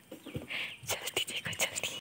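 A person whispering softly: a brief hiss about half a second in, then a run of small sharp clicks through the second half.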